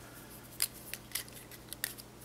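A few faint, sharp clicks, irregularly spaced, from a plastic felt-tip marker being handled: a different marker being picked up and uncapped.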